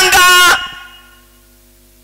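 A man's voice through a microphone and PA, loud and drawn out, breaks off about half a second in and echoes briefly in the hall. A faint steady electrical hum from the sound system is left.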